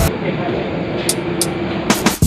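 Ambient noise inside an airport jet bridge: a steady hum with a few short sharp clicks, about a second in and again near the end.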